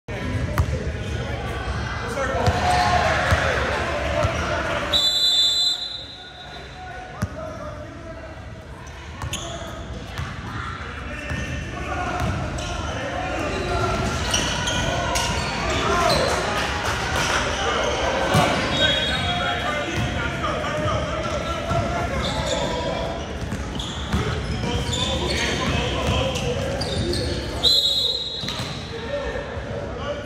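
Basketball game sounds in an echoing gym: the ball bouncing on the hardwood floor and indistinct voices of players and spectators. A referee's whistle blows sharply about five seconds in, briefly again around the middle, and once more near the end.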